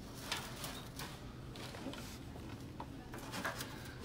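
Faint rustling and light crackles of dry honeysuckle vine and cut rose stems as stem pieces are pushed into a twig wreath base by hand, over a low steady hum.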